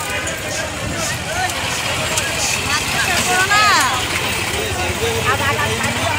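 Busy street sound: motor vehicles running, with people's voices talking around. One louder sound falls in pitch about three and a half seconds in.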